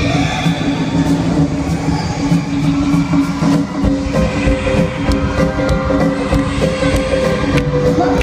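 Live concert music played loud over an arena sound system, with a steady beat, heard from among the crowd.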